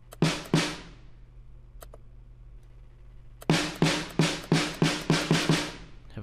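Sampled snare drum from the Addictive Drums software played back solo, with its lows slightly cut by EQ: two hits, a pause of about three seconds, then a steady run of about nine hits, roughly three a second, each with a short ring.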